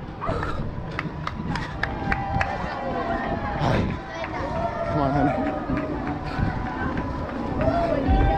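Running footsteps on asphalt, about three strides a second, over a low rumble of wind on the microphone. From about three seconds in, indistinct voices of other runners and onlookers call out over them.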